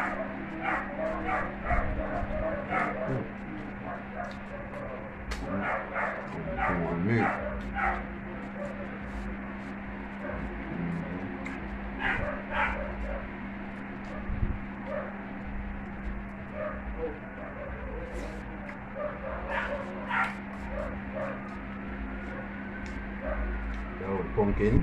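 Close-up eating sounds: wet chewing and smacking of a mouthful of dumpling and salt mackerel rundown, with a fork scraping and clicking on a plate, as many short sharp clicks. A few brief hums and whine-like mouth sounds come in, and a steady low hum runs underneath.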